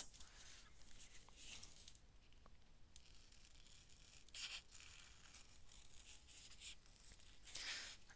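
Faint rustling of a sheet of sticky-back craft foam being handled, and scissors beginning to cut into it, louder near the end; otherwise near silence.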